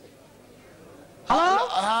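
Faint hiss, then about a second in a man calls out a long, drawn-out "Hallo!" in a sing-song voice, sliding up in pitch and then holding the note.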